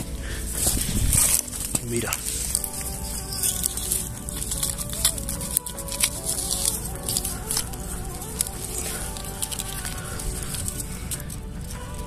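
Soft background music of long held notes, over scattered crackling and rustling of dry grass and gravel as a folding knife cuts a thistle mushroom at its base.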